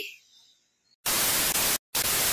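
TV static sound effect used as an edited video transition: a loud, even burst of hiss starts about a second in, breaks off for an instant near the end, then resumes.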